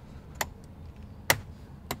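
Three sharp clicks, the middle one loudest, from a flat-head screwdriver pressing the spring-wire clips behind a Tesla Model 3's steering-wheel airbag cover, as the clips let go and the cover pops loose.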